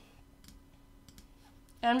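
A few faint computer mouse clicks while a colour is picked, over a faint steady hum; a woman's voice starts near the end.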